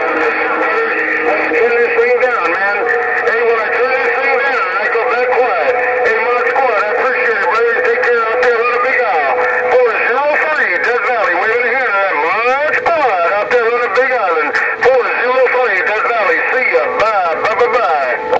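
Busy CB channel heard through a President HR2510 radio's speaker: several stations transmitting over one another, with a steady heterodyne whistle under warbling, sliding tones and garbled voices. The sound has no bass or treble.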